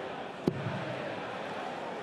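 A dart striking the bristle dartboard with a single sharp thud about half a second in, over the steady murmur of a large arena crowd.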